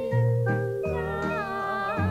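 Music from a live recording of a 1950s-style song medley: steady bass notes changing about every half second under held chords, with a wavering, sliding melody line coming in about a second in.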